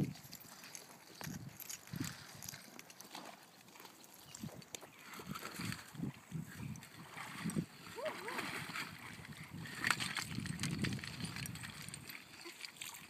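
Faint, irregular splashing of water as a dog swims and a child wades, with faint voices in the background.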